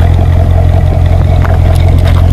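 Chevrolet Corvette's V8 engine running through its exhaust, loud and steady.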